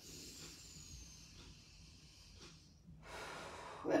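A person breathing slowly and softly: a long breath out lasting about two seconds, then a shorter breath in near the end.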